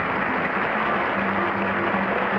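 Studio audience applauding steadily, with faint music underneath.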